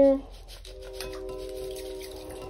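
A distant train horn sounding one steady multi-note chord, starting about half a second in and held throughout, over the faint rustle of lye granules pouring into a glass measuring cup.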